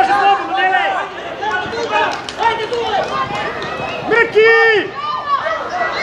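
Voices on a football pitch shouting and calling out in short, high-pitched calls one after another, with a louder drawn-out call about four and a half seconds in.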